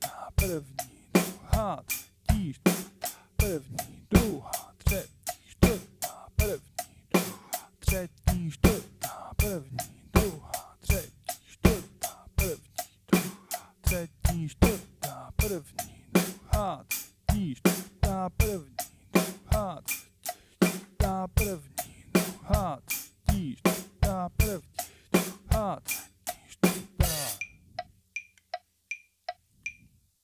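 Acoustic drum kit played in a steady accented pattern of kick, snare and cymbal strokes along with a metronome, at about 80 beats a minute. The playing stops about 27 seconds in, leaving only the faint metronome clicks.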